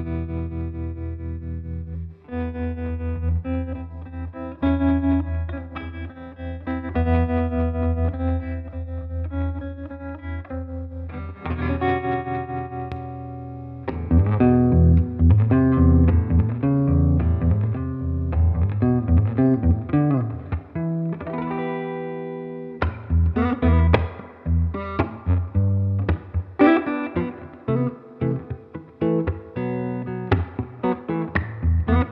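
1954 Gibson Switchmaster archtop electric guitar with its original P-90 pickups, played through a Gibson Falcon combo amp: ringing chords with held low notes at first, then busier, faster picked lines from about halfway through.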